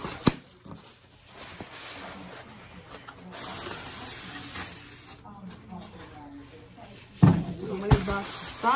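Cardboard shipping box and its packing being handled and pulled open: a sharp knock just after the start, then scraping and rustling of cardboard and packing material.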